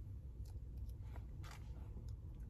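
Faint small clicks of a plastic buffer-liquid vial from a home COVID antigen test kit being handled and twisted open, over a low steady rumble.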